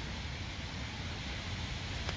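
Steady outdoor background noise: an even hiss over a low rumble, with no distinct knocks or scrapes standing out.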